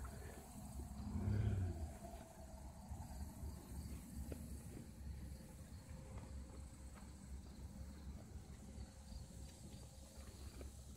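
Faint outdoor ambience: a thin steady high insect buzz over a low rumble, with a brief louder low sound about a second in.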